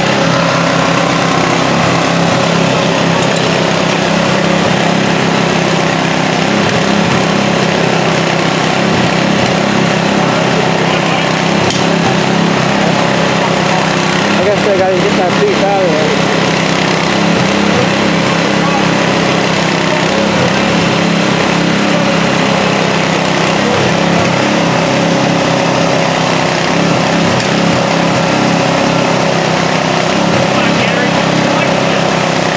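An engine running steadily at a constant speed, a continuous even hum that does not change in pace or level.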